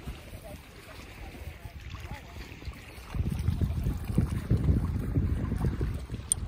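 Faint distant chatter, then about three seconds in a loud, irregular low rumble of wind buffeting the microphone.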